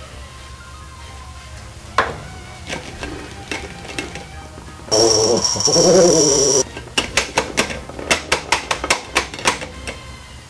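Electric handheld massager buzzing against a man's head, making his drawn-out 'aaah' warble for about a second and a half, followed by a quick, uneven run of sharp clicks. A single sharp knock comes earlier, about two seconds in.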